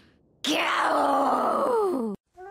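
A young woman's voice doing a playful mock growl into a microphone: one long drawn-out "Raaarrrr!" that starts about half a second in and slides down in pitch as it goes.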